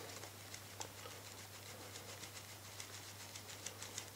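White eraser rubbed back and forth on a glossy plastic mask to scrub off a black scuff mark. It makes faint, quick, repeated scratchy strokes.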